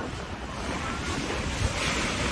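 Steady rushing noise with uneven low rumbling, typical of wind on the microphone over outdoor city ambience.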